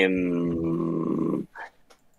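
A man's voice holding a long hesitation sound, 'eeh', for about a second and a half at a steady, slightly falling pitch, then breaking off.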